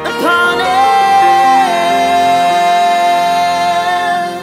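A man singing one long held note over sustained instrumental accompaniment. The voice slides up into the note just after the start, steps down once before halfway, and holds almost to the end.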